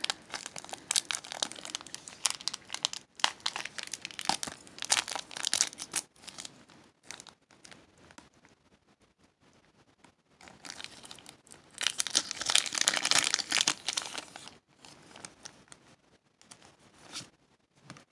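Foil wrapper of a Pokémon Sun & Moon Burning Shadows booster pack crinkling and tearing as it is pulled open by hand. The crinkling comes in two spells with a quieter gap between them, and the second, about eleven seconds in, is the louder.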